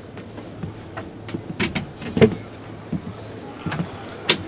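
Footsteps and a few sharp knocks on the aisle floor of a parked coach, over a steady low hum. The loudest knock comes about two seconds in.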